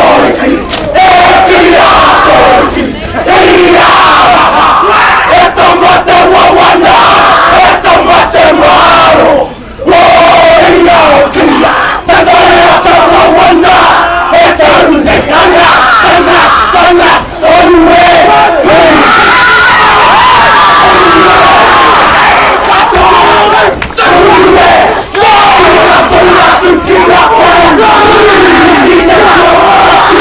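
Haka performed by a large group of teenage boys: loud shouted chanting in unison, punctuated by sharp slaps, with a brief break about ten seconds in.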